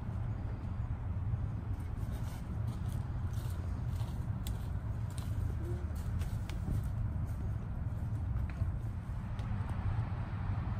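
A steady low outdoor rumble, with faint scattered crackles of footsteps on dry leaves and pine straw.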